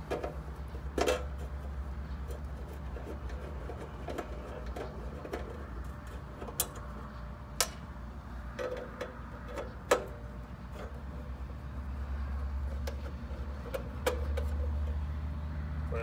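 Scattered sharp metallic clicks and taps of a 5/16 nut driver working the nuts on the steel inner door panel of a pool timer box, over a steady low rumble that grows louder near the end.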